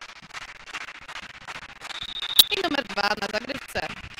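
Volleyball referee's whistle, one short blast about two seconds in, signalling the serve. Around it are sharp claps and a drawn-out shout from players in the reverberant sports hall.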